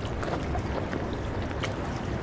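River ambience: water lapping and trickling, with small scattered splashes over a low steady rumble.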